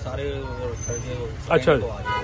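Voices talking over a steady low rumble of background noise, with a short loud voice burst about one and a half seconds in.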